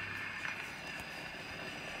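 Surface noise from a pre-1910 shellac disc playing on a His Master's Voice Monarch horn gramophone. The needle runs on in the grooves after the spoken recording has ended, giving a steady hiss with a few faint clicks.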